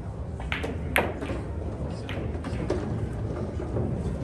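Pool shot: a click of the cue tip on the cue ball, then about half a second later a louder, sharp clack of the cue ball hitting an object ball, followed by a few fainter ball clicks, over a steady low hall hum.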